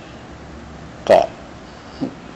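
A man says a single short syllable about a second in, between pauses in his speech; otherwise there is only low, steady room noise.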